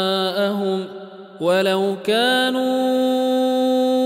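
A man's voice reciting the Qur'an in the melodic, chanted tajweed style of the Warsh reading, drawing out vowels in long held notes. About a second in he breaks off briefly for breath, then comes back on a rising note that he holds steady.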